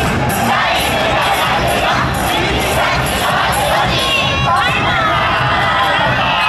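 Many voices shouting together, typical of a yosakoi dance team's calls, over loud dance music with a steady beat. A few long shouts that rise and fall come about four to five seconds in.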